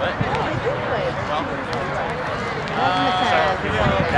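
Several people's voices calling out on the beach, one louder call held for about a second near three seconds in, with a few sharp taps of a Spikeball rally scattered through.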